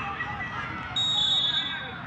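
Referee's whistle, one short steady blast about a second in, signalling that the penalty kick may be taken, over a low stadium crowd murmur.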